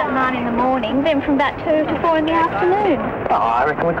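Only speech: people talking in conversation.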